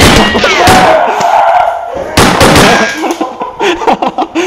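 Airsoft guns firing in rapid bursts: one volley runs on to nearly two seconds in, and a second sudden burst comes just after two seconds.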